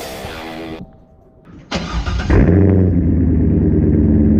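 Music cuts off, then about two seconds in a Chevrolet C5 Corvette's 5.7-litre V8 starts with a sudden burst and settles into a loud, steady idle through its quad exhaust.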